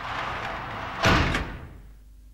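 Transition sound effect: a rushing whoosh that builds and ends in a sharp slam-like hit about a second in, then fades away.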